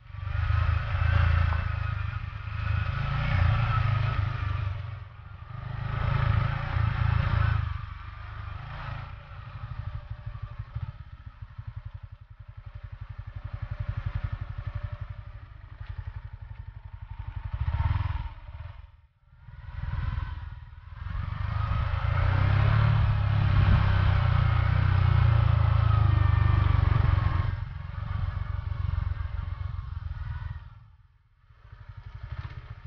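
Motorcycle engine running while the bike is ridden, the throttle opening and closing so the sound swells and eases again and again. It almost drops away briefly about two-thirds of the way in, then runs loud and steady for several seconds near the end.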